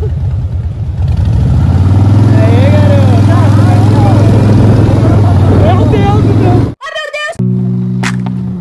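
Motorcycle engine running at a steady speed while riding two-up, with a voice over it. Near the end it cuts off abruptly and steady musical notes follow.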